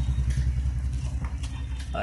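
A steady low rumble, with faint clicks and rustling as hands handle a cardboard box and its packaging.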